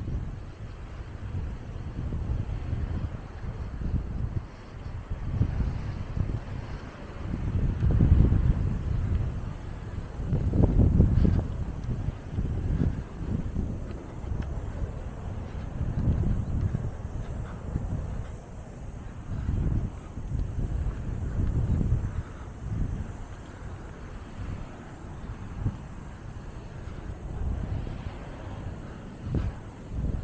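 Wind buffeting the camera microphone: a low rumble that rises and falls in irregular gusts, the strongest about a third of the way in.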